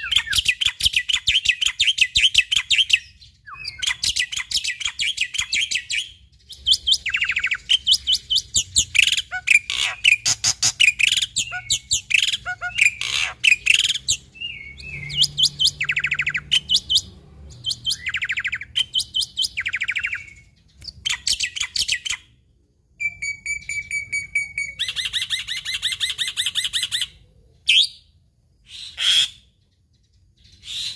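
A caged black-winged starling singing: bursts of fast, chattering notes a few seconds long, separated by short pauses, with a steady whistled note held briefly about three quarters of the way through.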